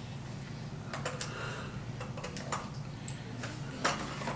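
A few light clicks and taps as a small case of double-cut steel carving burrs is opened and handled, over a steady low hum.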